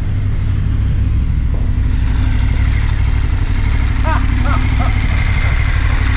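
Large adventure-touring motorcycle engine idling steadily close by, an even low rumble.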